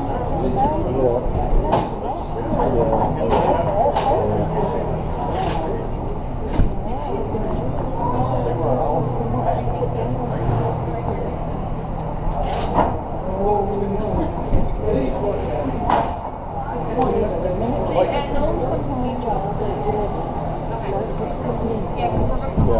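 Muffled voices of people talking close by, unclear as words, over a steady low hum, with scattered sharp knocks and clicks.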